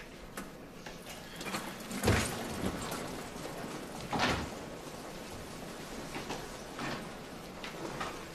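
Swinging double doors pushed open, with two thuds about two seconds apart, the first one the louder, over a steady low hiss.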